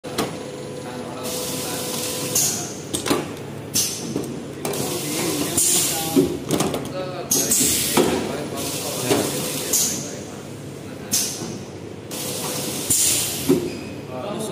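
Toner cartridge flow-wrap packing machine running, with short, sharp hisses recurring about once a second over the machine's steady running sound. Indistinct voices can be heard in the background.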